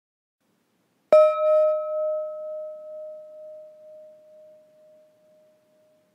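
A single meditation gong struck about a second in, ringing on with a clear tone that wavers in loudness as it slowly fades away. It marks another minute passing in the silent sitting.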